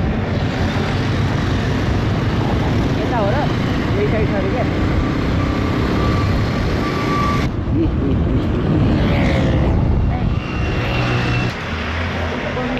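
Wind rushing over the microphone and road and engine noise from riding on a motorbike through traffic. The sound changes abruptly about seven and a half seconds in, and drops near the end.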